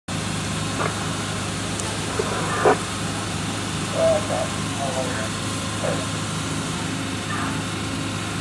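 Steady low hum of an idling engine, with a couple of sharp knocks in the first three seconds and brief snatches of distant voices about halfway through.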